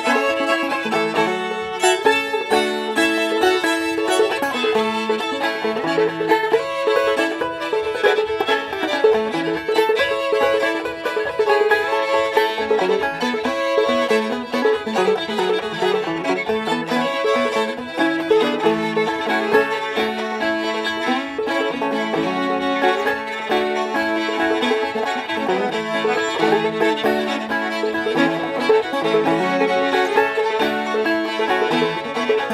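Old-time string band playing a fast fiddle tune live: two fiddles bowing the melody over banjo and guitar.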